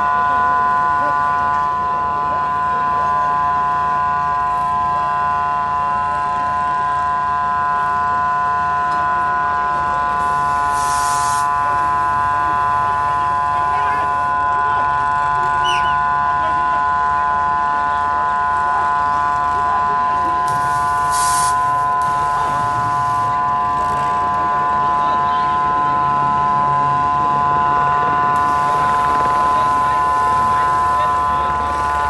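A loud, steady machine-like whine made of several high tones over a low hum, unchanging throughout, with two brief hissing bursts about a third and two thirds of the way through.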